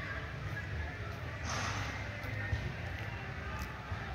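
Faint, distant voices over a steady low rumble, with a short hiss about one and a half seconds in.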